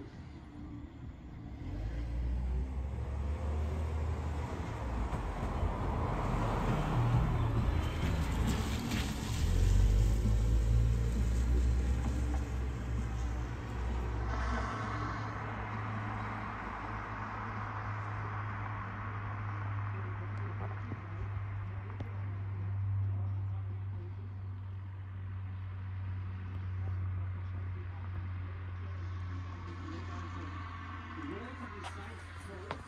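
Road traffic on a residential street: a car goes by, loudest about ten seconds in, and another passes later, over a steady low rumble.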